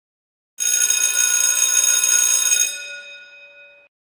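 An electric bell, its clapper rattling continuously against the gong for about two seconds, then the metallic tone dying away over the next second or so.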